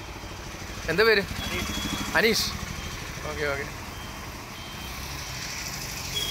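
Steady low rumble of a running vehicle engine, with three short voice sounds about one, two and three and a half seconds in.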